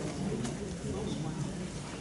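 Faint, indistinct voices with room noise in a meeting room, a lull between amplified speakers.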